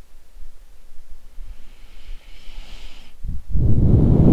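A person's breath on a close microphone: a faint inhale about halfway through, then a louder, low breath noise near the end.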